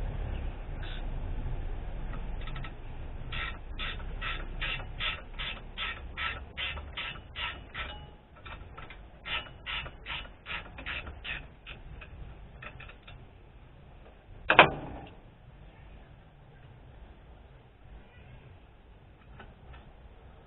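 A run of evenly spaced clicks from hand tools at work on an A/C compressor's mounting, about two to three a second for some ten seconds. A single sharp knock follows a little later.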